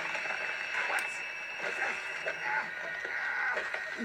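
Quiet, muffled audio from the cartoon episode playing through a speaker in the room: faint voices over a steady hiss.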